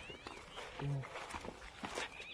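Footsteps in sandals on stone steps: a few light scuffs and taps as someone steps down, with a brief voiced sound from a person just before the middle.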